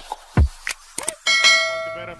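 A few beat hits with deep kicks from an intro music track, then a struck bell chime about a second in that rings on and slowly fades: a notification-bell sound effect.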